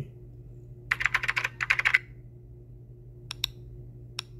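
Computer keyboard typing, a quick run of keystrokes lasting about a second, then two quick clicks like a mouse button later on, over a faint steady hum.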